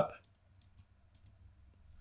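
Faint computer mouse clicks, about six in the first second and a half, pressing the software's zoom-in button.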